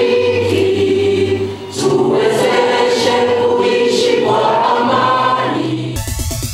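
A group of people singing together in a room, slow phrases of long held notes with short breaths between phrases.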